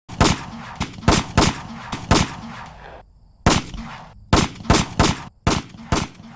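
Recorded gunfire: about a dozen sharp shots fired in an irregular volley, with a pause of about a second partway through, each shot followed by a short echoing tail.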